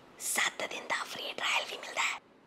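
A person whispering rapidly and breathily, with no voiced pitch, for about two seconds and then stopping suddenly.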